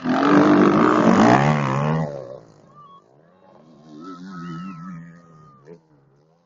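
Motocross bike engine revving loudly as the bike passes close by, its pitch wavering and then falling, and fading about two seconds in. A quieter, more distant bike revs up and down from about the middle until near the end.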